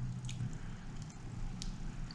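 A few faint clicks from a laptop being used to open a web page, over low room noise. A low steady hum is heard until it stops about half a second in.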